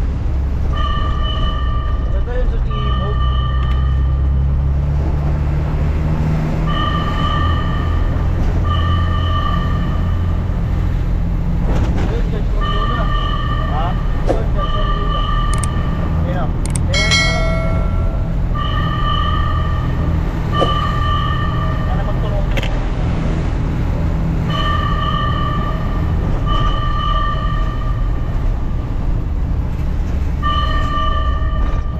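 Fire truck warning horn sounding in repeated double blasts, a pair about every six seconds, heard from inside the cab over the truck engine's steady low drone.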